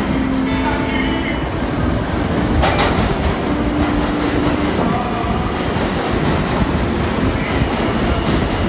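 Subway train running in the station, rumbling with wheels clattering over the rails. There is a sharp burst of noise about three seconds in.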